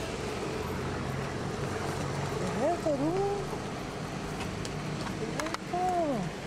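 Street ambience with a steady traffic hum, and a voice giving two short wavering, wordless vocal sounds, about two and a half seconds in and again near the end.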